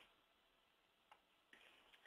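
Near silence: room tone, with a faint single click about a second in.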